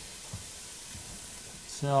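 Onions, garlic and peppers sizzling steadily in olive oil in a pot, softening as they sauté. A voice says "No" near the end.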